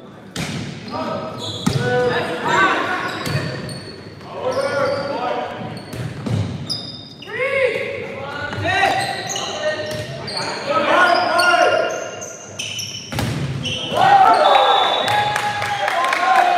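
A volleyball being struck again and again during a rally, several sharp smacks of serve, set and spike, echoing in a large gym, with players' voices calling over them.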